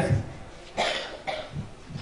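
A cough about a second in, followed by a shorter, smaller one.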